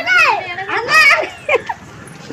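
Excited high-pitched voices calling out, with one loud cry at the start and another about a second in, then shorter calls.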